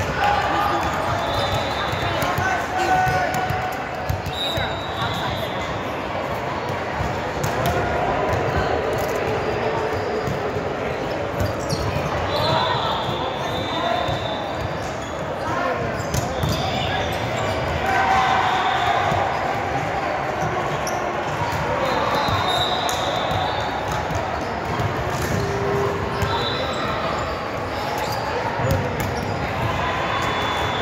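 Volleyball play in a large gym: balls being struck and bouncing on the hardwood floor in scattered sharp knocks, with players' and spectators' voices throughout.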